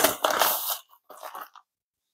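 Plastic poly mailer crinkling and rustling as a padded envelope is pulled out of it, loudest in the first second, with a few fainter rustles before it stops about a second and a half in.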